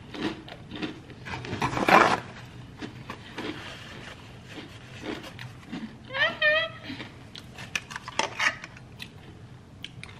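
Close-up chewing and crunching of a ranch-dipped pickle, in short crunchy bites, loudest about two seconds in. A brief high wavering tone comes about six seconds in, and a few light clicks follow.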